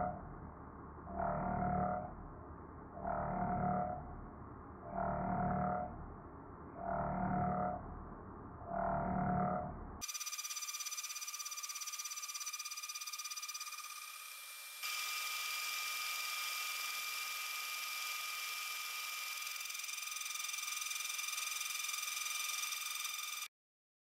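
CNC spindle and end mill cutting aluminium along a trochoidal toolpath. The cutting noise swells and fades about every two seconds as the tool loops into the material. About ten seconds in, the sound changes abruptly to a steady high spindle whine with cutting hiss, which cuts off suddenly just before the end.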